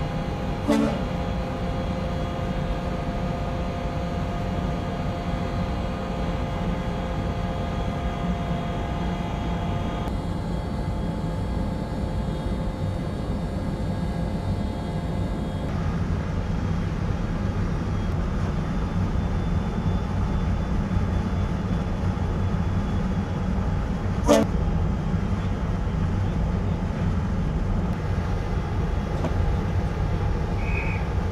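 Steady low rumble with a machine hum of several steady tones over it in the first half, and two brief sharp clicks, one about a second in and one about three-quarters of the way through.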